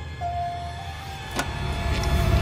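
Hatchback tailgate latch releasing with a single sharp click about one and a half seconds in, over a low droning music score with a few held notes.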